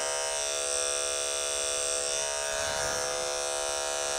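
Andis electric pet clipper with a #30 blade running at a steady buzz while it trims hair from between a dog's paw pads.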